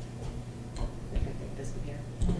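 A few scattered light clicks or ticks over a steady low electrical hum in a meeting room.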